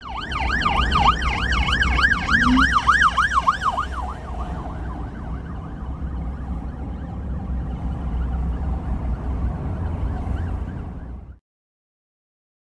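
Police car siren on its rapid yelp setting, rising and falling about three times a second, loud for the first few seconds and then fainter, over steady low road rumble heard from inside a car. Everything cuts off suddenly near the end.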